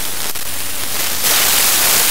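A smartphone's electromagnetic interference made audible through the Ear Tool's inductor sensor and amplifier: a dense static hiss with fine rapid clicks. About a second in it turns louder and brighter, the interference changing as the phone opens an app.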